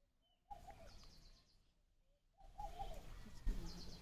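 Birds calling faintly: two short spells of rapid high chirping, each with a lower wavering call, separated by moments of dead silence.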